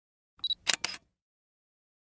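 Intro sound effect for an animated channel logo: a brief high beep followed by two quick sharp clicks, all within the first second.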